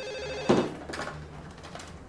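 Desk telephone ringing, then a sharp knock about half a second in as the handset is lifted from its cradle, with a smaller click just after.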